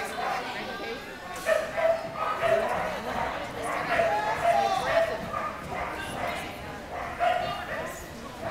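A dog barking and yipping repeatedly, with people talking in the background.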